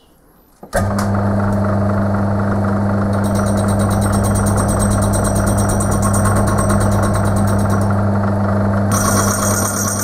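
Metal lathe switching on under a second in and running with a steady loud hum. From about three seconds in, a fast, even high-pitched pattern is added, which fits the carbide insert tool cutting the spinning zamak-12 faceplate rim.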